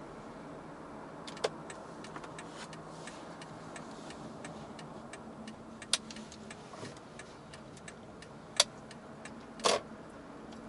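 Steady in-car driving noise with many faint, irregular clicks and four sharp knocks: about a second and a half in, near six seconds, and two close together near the end, the last one a little longer.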